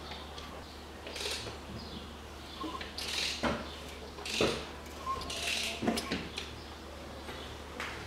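Timing-chain tensioner on a 2003 Toyota Harrier's four-cylinder engine clicking a couple of times as the crankshaft is turned by hand, its ratchet taking up the slack in the newly fitted timing chain. Short metallic scrapes and rattles of the turning crank and chain come at intervals.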